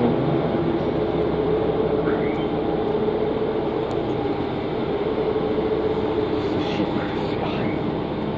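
Steady hum of a diesel railcar on the non-electrified Kameyama–Kamo section of the JR Kansai Line, heard from inside the passenger cabin with the engine running.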